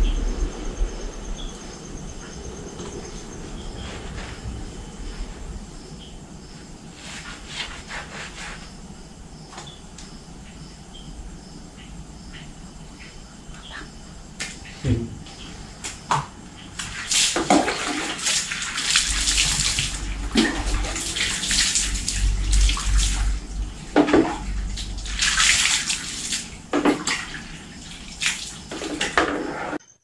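Hands splashing and rubbing soapy water over a tubeless tyre and its alloy rim, spreading foam along the bead to check for air leaks. Quieter at first, then a run of short wet splashes and scrubs in the second half.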